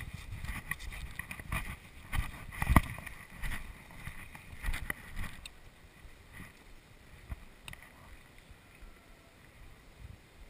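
Rustling and footsteps through tall grass and brush, with knocks of handling noise close to the microphone. The loudest knock comes about three seconds in, and the rustling dies down after about five seconds.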